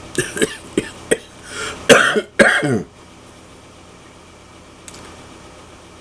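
A man coughing and clearing his throat: a quick run of short coughs, then a few louder ones ending about three seconds in, followed by quiet room tone.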